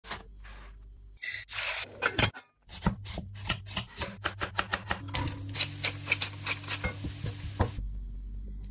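A knife crunching through a toasted tortilla wrap, then a quick, even run of knife cuts through soft orange produce onto a cutting board, about three cuts a second.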